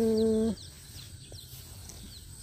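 The held end of a man's drawn-out "go" stops about half a second in, leaving quiet outdoor ambience with faint, short, high bird chirps.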